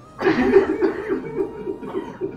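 A man sobbing close to the microphone, his voice breaking into short, shaking gasps of weeping that fade toward the end.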